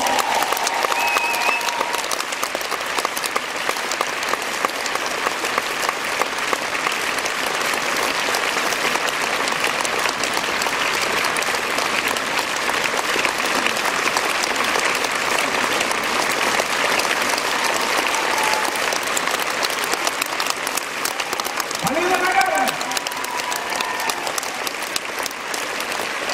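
Concert audience applauding steadily. A voice rises briefly over the clapping near the end.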